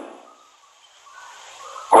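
A quiet pause in a man's speech, holding only faint background noise: his voice trails off at the start and he begins speaking again at the very end.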